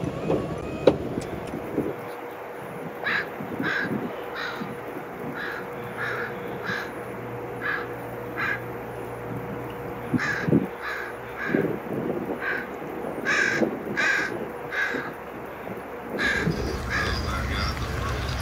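A bird calling over and over: short calls about two a second, with a brief pause midway, over a faint steady hum.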